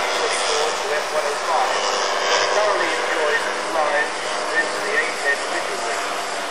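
A Mitchell A-10 flying-wing ultralight's engine running steadily in flight overhead, with people's voices talking over it.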